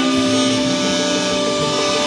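Steelpan struck with rubber-tipped mallets, holding long notes over a live soul band with keyboard, bass and drums.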